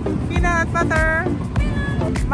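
Dogs whining in a run of high-pitched, wavering cries over steady background noise.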